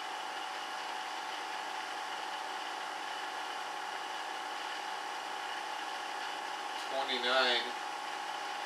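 Homemade magnetic motor with its magnet rotors spinning at around 3,000 rpm, giving a steady whine of several held pitches. A brief voice sound comes in near the end.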